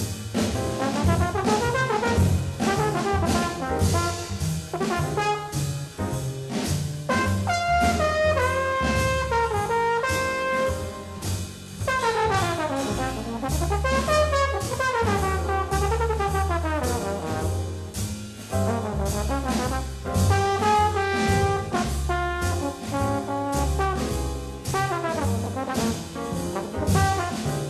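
Hard bop jazz from a 1959 sextet recording: a horn plays a fast melodic line with running, falling phrases over string bass, piano and drums with steady cymbal strokes.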